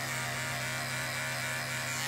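Corded electric pet clippers running with a steady buzz while shaving fur from a dog's chest.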